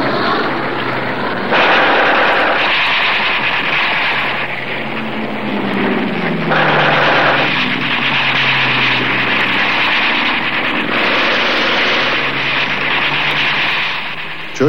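Wartime air-combat soundtrack: aircraft engines droning with falling pitch, under long bursts of gunfire that start suddenly a few times.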